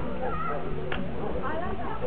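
Indistinct voices of people talking, with one sharp click about a second in.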